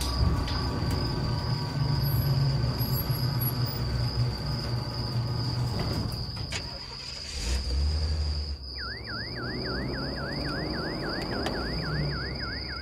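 A vehicle engine running with a low rumble, cut off about nine seconds in. Then a fast run of rising chirps, about three a second, over a steady high thin tone.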